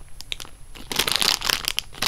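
Clear plastic bag crinkling as a packaged squishy toy is handled and turned over in the hand. It is sparse and faint at first, then a dense crackling from about a second in.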